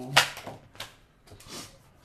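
Tarot card being drawn and laid on the table: one sharp slap just after the start, then a few softer taps and rustles of the cards.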